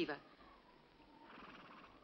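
A woman's line of dialogue ends right at the start, followed by a quiet pause with only a faint, soft background sound in the second half.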